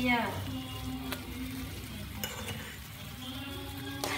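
Soup broth boiling in a wok, a steady bubbling hiss, with a couple of light clicks of a metal spoon against the wok as fermented soybean paste is stirred in.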